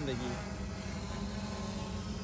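Multirotor drone hovering overhead, its propellers making a steady hum.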